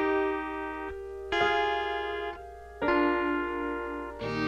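Instrumental intro of a country song: a keyboard plays three sustained chords, one struck about every second and a half, each left to ring and fade before the next.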